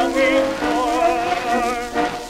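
An early acoustically recorded Victor 78 rpm disc playing an orchestral passage: several instruments hold sustained notes with a wavering vibrato.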